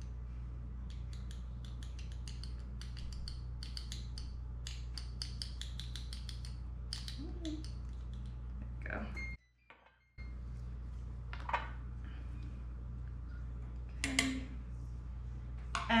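A small measuring spoon tapping and scraping against a spice jar while scooping ground coriander: many quick, light clicks for about the first nine seconds, then a few scattered knocks, over a steady low hum. The sound cuts out briefly about nine seconds in.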